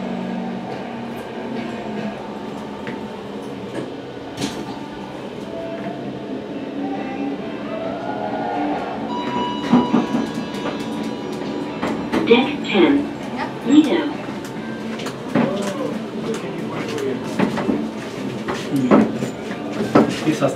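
Glass passenger elevator running as the car descends, a steady low hum of the ride. People's voices come in during the second half.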